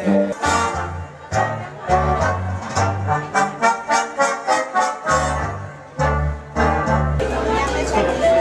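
Music with a bass line, sustained melody notes and a quick, even beat of struck chords, changing about seven seconds in.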